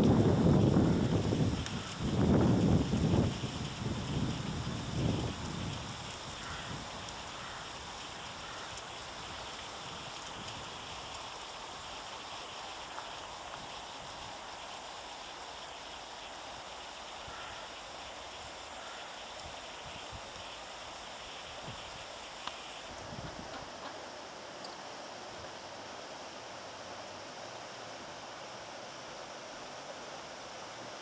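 Wind buffeting the microphone in gusts for the first five seconds or so, then a steady hiss of flowing river water.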